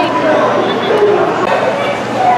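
Voices over background chatter: short, wavering, high-pitched vocal sounds.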